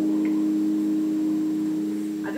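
Music heard over AM radio: a steady, held low chord with no speech over it, easing off slightly near the end.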